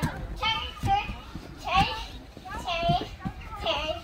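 A young girl's high-pitched voice in a run of short, excited wordless cries, about five in four seconds, the sound of a child at play.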